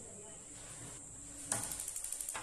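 Gas stove's battery pulse igniter sparking: after a quiet stretch, a rapid, even train of sharp clicks starts about one and a half seconds in. The high-voltage ignition is working again now that the switch wire, chewed through by a rat, has been reconnected.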